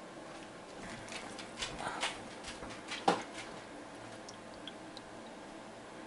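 Light clicks and knocks from handling a stainless steel freeze-dryer tray and a milk jug, clustered in the first half, with one sharper knock a little after three seconds in.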